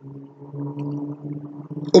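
A steady low hum with a few higher overtones, the background noise of the recording setup, heard with no speech over it; the next words begin at the very end.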